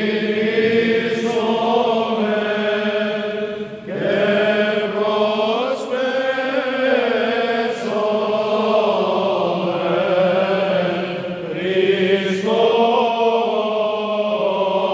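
Male voices singing Byzantine chant, a slow melody moving over a steady held drone note (ison), with new phrases beginning about four seconds in and again near the end.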